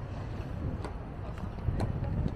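Wind buffeting the microphone in an uneven low rumble, with two sharp clicks about a second apart.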